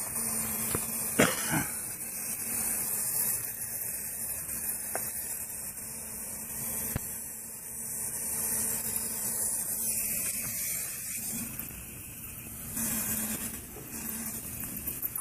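A steady high hiss with rustling close to the microphone as a nylon-sleeved arm reaches up into a ceiling void, and one cough about a second in.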